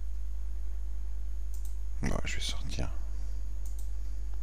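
A few faint sharp computer clicks from a mouse or keyboard, over a steady low electrical hum. About two seconds in comes a brief vocal sound lasting under a second, a mumble with no clear words.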